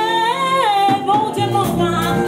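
Live gospel worship song: a singing voice holds a long, wavering note over a band with congas, bass guitar and drum kit.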